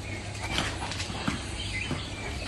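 Dogs moving about on a concrete yard: a few scattered light clicks and taps of paws and claws over a steady low background hum.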